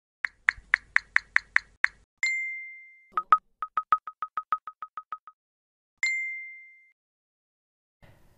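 Chat-message sound effects for an animated intro: eight short high blips at about four a second, a bright ding that rings out for under a second, a quicker run of about a dozen lower blips like typing, then a second ding.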